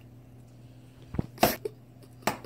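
A soft thump a little over a second in, then a short, loud burst of noise.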